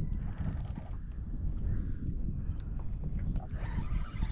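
Fishing reel being cranked against a hooked fish, its gears giving scattered small clicks and ratcheting over a steady low rumble.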